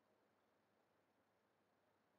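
Near silence: faint, steady background hiss.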